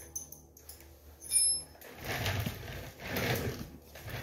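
Hand-tool and parts handling while working on a motorcycle. There is a brief high-pitched ring about a second and a half in, then two longer scuffing, rustling sounds.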